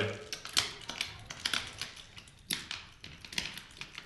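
Tipp-Kick tabletop football game in play: a string of irregular sharp clicks and taps as the kicker figures are pressed and kick the small ball across the board. One knock about two and a half seconds in is louder than the rest.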